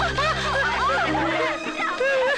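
Film soundtrack: a sustained low music chord that drops away about one and a half seconds in, under several people laughing and jeering over one another.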